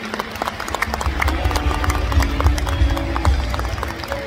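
Concert audience laughing and clapping, a dense patter of irregular claps, with music playing underneath.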